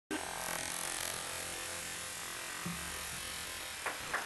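Steady buzzing electronic noise with a few faint held tones, coming straight from the band's computer output, and a short click near the end.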